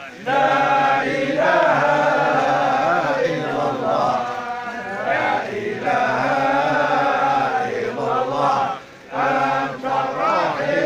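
A crowd of male mourners chanting together in unison: a slow, drawn-out funeral chant. It breaks briefly just after the start and again about nine seconds in, then resumes.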